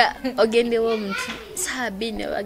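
Speech only: a girl and a woman talking in conversation.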